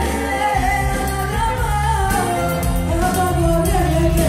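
Live Greek band, amplified: a woman singing a wavering, ornamented melody into a microphone over bouzouki and band with a steady bass beat.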